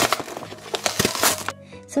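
Plastic toy packaging crinkling and crackling as it is handled, in a dense run of crackles that stops about a second and a half in. Soft background music plays underneath.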